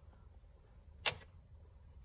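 A single sharp click about a second in: a pickup truck's dashboard headlight switch being turned on. Otherwise faint room hum.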